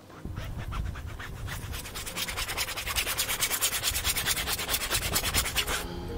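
A stiff paintbrush scrubbing across a stretched canvas on an easel: rapid, even scratchy strokes, several a second, growing a little louder and stopping just before the end.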